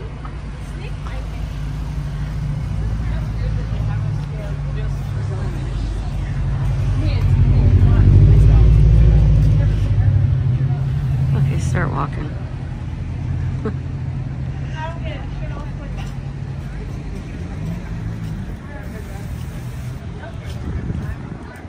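Street traffic: a motor vehicle's engine rumbling as it passes, swelling to its loudest about eight seconds in and then fading, with voices of passers-by around it.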